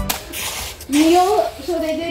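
Background music cuts off at the start, followed by a brief rustling hiss. From about a second in, a child's voice calls out in drawn-out, wavering tones.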